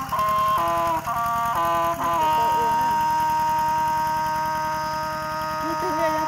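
A two-wheel walking tractor's single-cylinder engine chugging at a steady, rapid beat while it works through a flooded rice paddy. A melodic tune plays over it, stepping between notes and then holding one long note from about two seconds in.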